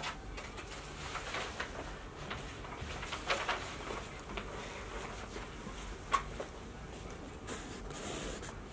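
Quiet room tone with faint handling and movement noises: a few soft rustles and light knocks, and one sharp click about six seconds in.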